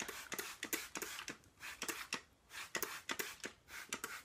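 Plastic trigger spray bottle misting water onto a section of hair in a rapid series of short sprays, about three a second, wetting the hair.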